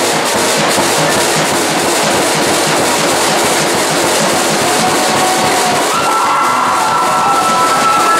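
Drum kit solo played live: fast, dense drumming with cymbals over it. From about five seconds in, a steady high tone sounds over the drums, stepping up in pitch about a second later.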